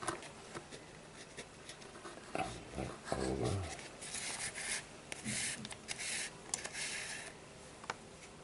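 Cord rubbing and sliding as it is pulled through the strands of a Turk's head knot wrapped on a cardboard tube, with small clicks and rustling hisses that come thickest a few seconds in. About two and a half seconds in there is a short, low voice-like sound.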